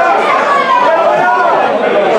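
Chatter of several people talking at once, their voices overlapping with no single clear speaker.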